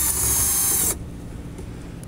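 Cordless drill/driver with a 3 mm Allen bit running briefly to back out the TV lamp housing's retaining screw; the motor whine stops about a second in.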